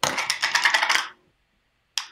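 A quick rattle of rapid clicks with a metallic, jingling character, lasting about a second.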